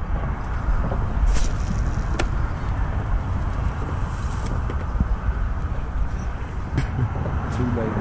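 Steady rushing rumble of traffic on the highway overpass, with a few short sharp clicks.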